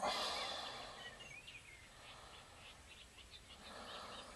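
Faint bird calls: a few short chirps and rising whistles over quiet background noise outdoors.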